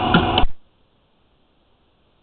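Steady machine-like background noise with two short knocks cuts off abruptly about half a second in. The rest is near silence.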